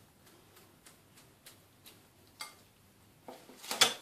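Faint, quick clicks, about three a second, from surimi crab sticks being cut by hand into small pieces over a glass bowl, with a few louder clicks near the end.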